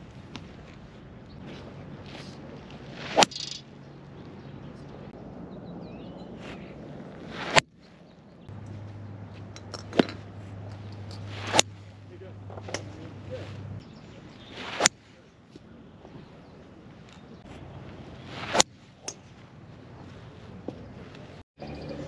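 Golf balls struck off a range mat with a TaylorMade Qi10 7-wood: about six sharp cracks of club on ball, a few seconds apart.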